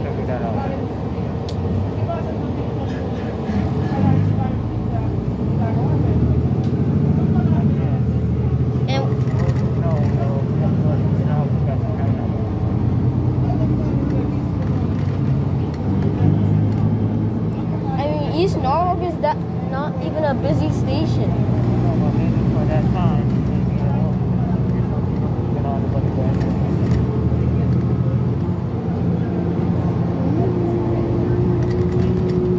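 Inside a 2017 New Flyer XD40 diesel transit bus under way: a steady low engine and drivetrain drone that grows louder about four seconds in. Indistinct voices are heard over it.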